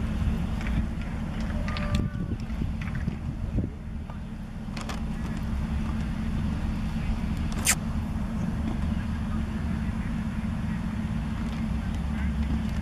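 Steady low rumble of wind on the microphone with a constant low hum, faint distant voices, and one sharp click a little under eight seconds in.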